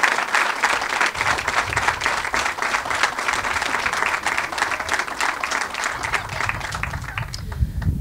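Audience applauding: dense, steady clapping from a seated crowd that thins out over the last couple of seconds.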